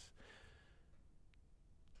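Near silence: room tone, with a soft intake of breath in the first second and a faint click a little past the middle.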